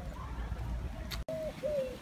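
A dove cooing twice, two short even notes, about a second in, over a low outdoor rumble.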